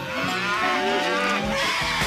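Cattle mooing in a cartoon soundtrack: several wavering calls overlap. Low, regular thuds begin about a second and a half in.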